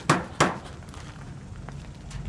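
Two sharp knocks about a third of a second apart: a hand patting the curved shroud over the sweeper's broom.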